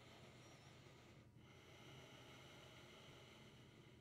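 Faint Ujjayi breathing through the nose: a soft, steady rush of breath with a short break between breaths about a second in, over a low steady room hum.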